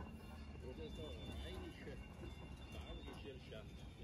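Voices of several people talking in the background, over a steady low rumble.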